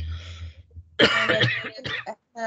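A soft breathy hiss, then about a second in a loud, abrupt throat-clearing cough from a person.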